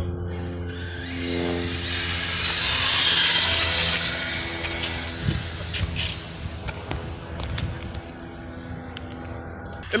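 High-speed RC cars launched in a race: a rush of motor whine and tyre noise that swells over the first few seconds and fades as they run off, with a few sharp clicks near the middle.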